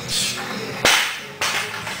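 Loaded strongman axle bar coming down from overhead and landing on the gym floor: a single loud bang a little under a second in, followed by a smaller knock about half a second later.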